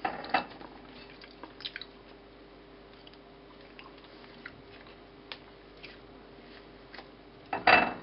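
Faint soft squishing and small clicks of bread being pressed around a chocolate-coated marshmallow Krembo and pulled apart, over a faint steady hum. A short burst of voice comes near the end.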